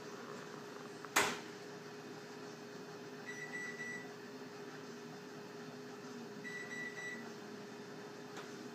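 Microwave oven beeping: two bursts of short, high beeps, one in the middle and one near the end, over a steady hum. A single sharp click comes about a second in.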